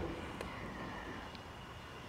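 Quiet room tone: a low, steady background noise with a faint click about half a second in.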